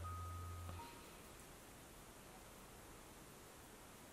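Near silence: faint room tone. A low hum with a faint high tone over it fades and cuts off just under a second in.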